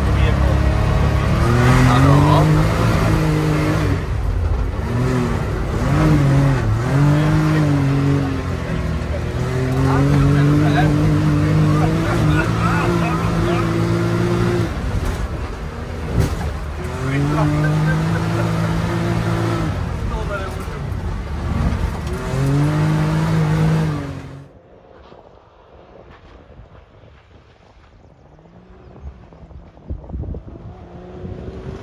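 Can-Am Maverick's 900 cc Rotax engine heard from inside the cockpit, revving up and falling back again and again as the side-by-side accelerates and lifts off on a gravel track. About 24 seconds in it cuts off abruptly, giving way to much quieter wind noise with a faint engine in the distance.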